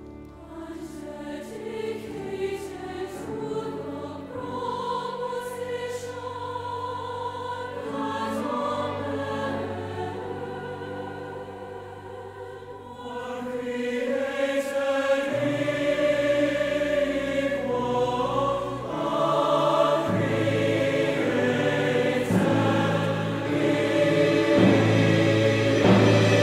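Large mixed choir singing with orchestral accompaniment, growing louder about halfway through and swelling again near the end.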